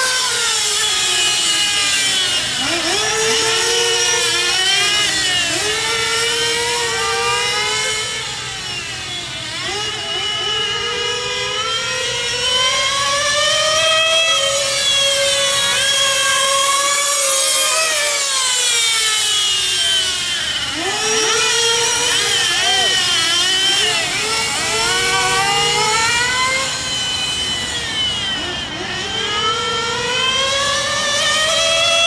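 Two-stroke nitro glow engine of a 1/8-scale RC car, an XTM XT2 buggy converted to on-road, running hard. Its high-pitched whine rises and falls continually as the throttle opens and closes, dropping low several times and climbing straight back up.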